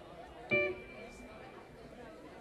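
A guitar note plucked once about half a second in, ringing out and fading over about a second against the low murmur of a club room.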